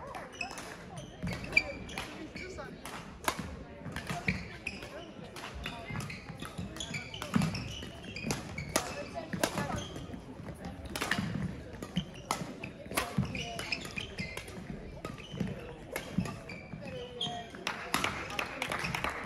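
Badminton rally: sharp racket strikes on a shuttlecock about every second or so, with players' footfalls on the hall floor.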